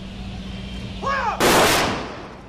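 Ceremonial guard firing one rifle volley for a funeral gun salute, about a second and a half in, just after a shouted drill command.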